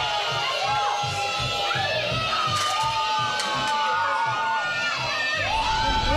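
Many young children shouting and calling out excitedly all at once, their high voices overlapping, over a low regular beat about three times a second.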